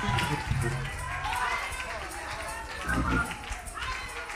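Indistinct voices, not close to the microphone, with low thuds underneath, about a second in and again near three seconds in.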